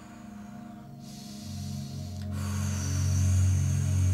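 Ambient meditation background music: a low sustained drone that swells louder from about a second and a half in, with a soft hiss and a faint high held tone over it in the second half.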